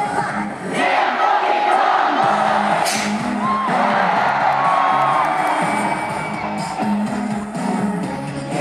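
Live K-pop song played loud over the stage PA, female voices singing over the backing track, with the crowd cheering and screaming. The bass drops out briefly about half a second in and comes back a little after two seconds.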